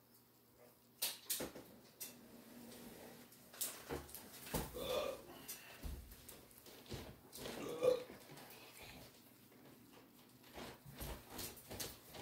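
Small scattered clicks and knocks of a paintbrush and plastic paint pots being handled on a table, with two short voice-like sounds about five and eight seconds in.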